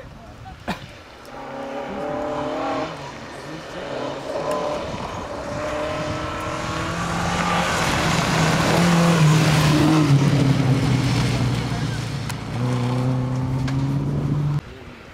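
A historic rally car's engine at full throttle on a gravel stage, the pitch climbing and dropping back as it changes up through the gears. It gets loudest as the car passes close by, about eight to ten seconds in, with the tyres spraying gravel, then revs hard again as it pulls away near the end.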